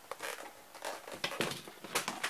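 A few light, irregular clicks and knocks from hands handling things, the loudest near the end.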